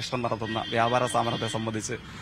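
A man speaking Malayalam in an interview, with no other sound standing out.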